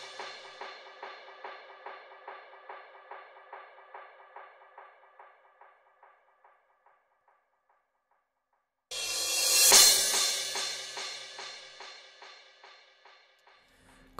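Crash cymbal run through a triplet delay (FabFilter Timeless 2): the cymbal's echoes repeat about three times a second and fade away. After a short silence, another crash comes in about nine seconds in, swells briefly and trails off into the same echoes.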